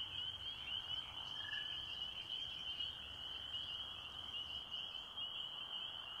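Faint, steady high-pitched trilling chorus of small animals, with a brief single note about a second and a half in.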